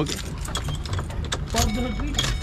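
Keys jingling and small sharp clicks in a van's cab as the driver reaches over to the dashboard controls, over a low steady rumble.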